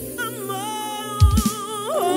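Live singing: a voice holds one long note with the band's bass dropped out, a few low drum thumps a little past the middle, and the note slides upward near the end.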